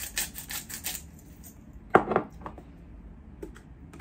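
Hand salt grinder twisted over a bowl, a quick run of gritty clicks in the first second, then a sharp knock about two seconds in and a few faint clicks after.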